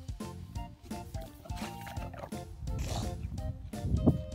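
Background music, with an English bulldog's noisy breathing and grunts as it shoves its face through snow after a ball, growing louder toward the end.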